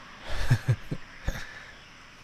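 A man's low chuckle: a few short bursts within the first second and a half. After that there is only a faint steady hiss.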